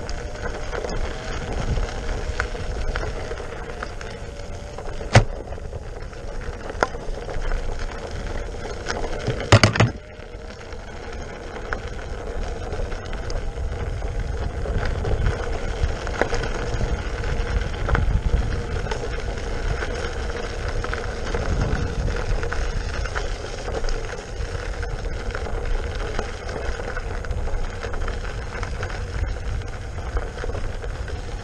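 King Song S18 electric unicycle riding over a gravel dirt trail: a steady hub-motor whine whose pitch drifts slightly with speed, over a low rumble from the tyre and wind. A couple of sharp knocks from bumps, the loudest about ten seconds in.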